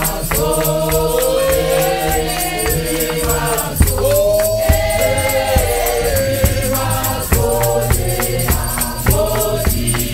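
Church choir singing a gospel song in harmony, holding long notes, over a shaken rattle and a steady percussion beat.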